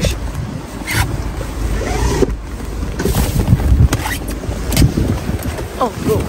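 Wind buffeting the phone's microphone outdoors, a heavy, uneven low rumble, with a few short knocks and brief snatches of voice.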